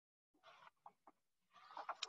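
Near silence, with a few faint, brief sounds in the background.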